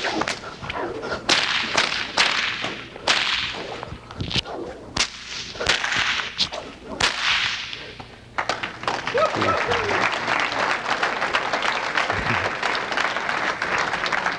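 A whip swung and cracked repeatedly, about ten sharp cracks with swishes between them over the first seven seconds. Then steady applause from the audience.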